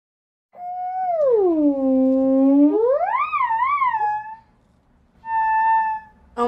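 Theremin played by hand: a single gliding tone slides down to a low note, swoops back up into two quick wavers, then fades out. After a short gap a brief steady higher note sounds near the end.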